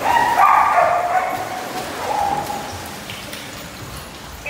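Dogs barking, loudest in the first second with another bark about two seconds in, over water splashing as dogs swim and wade in a pool.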